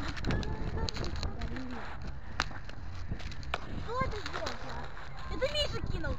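Faint voices of children talking and calling in the background, over a steady low rumble, with a few sharp clicks.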